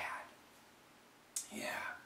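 A man's speaking voice: the end of a word fading out, a short pause of near silence, then a breathy 'yeah' starting sharply near the end.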